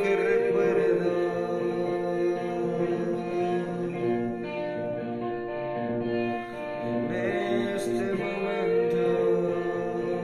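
A man singing a slow song in long held notes, accompanied by a semi-hollow-body electric guitar.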